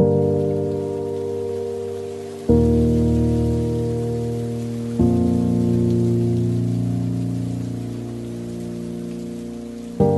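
Slowed-down, reverb-heavy piano chords opening a pop ballad: a new chord is struck about every two and a half seconds and then rings on and fades slowly. A steady hiss sits under the chords throughout.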